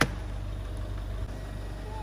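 Steady low rumble of an idling car engine, with one sharp knock right at the start as luggage is loaded into the car's boot.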